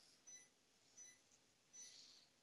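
Faint patient-monitor beeps, a short high tone about every three-quarters of a second, in step with a heart rate of about 80 beats a minute: the pulse-synchronised beep of a cath-lab monitor. Otherwise near silence.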